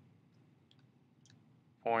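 A few faint, brief clicks and taps of a dry-erase marker writing on a whiteboard.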